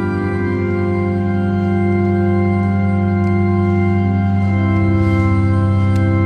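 Organ playing sustained chords, with the chord shifting partway through.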